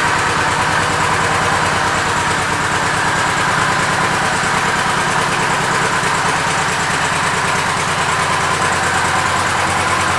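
Honda VTX1800 Retro's 1,795 cc V-twin idling steadily through its stock exhaust pipes.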